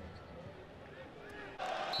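Faint football stadium ambience from the match broadcast: a low background wash with distant voices calling from the pitch and stands.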